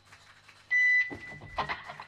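A short, loud, high steady tone about a second in, lasting about a third of a second and leaving a faint held tone at the same pitch, followed by brief voices in the room.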